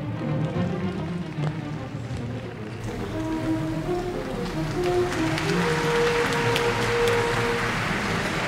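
Orchestral music with sustained notes, joined about five seconds in by audience applause that builds and carries on.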